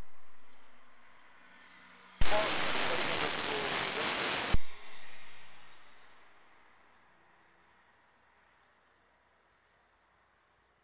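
A burst of radio static on the air traffic control frequency: a click, about two seconds of hiss with no readable words, and a sharp click as it cuts off, then a fade to near silence.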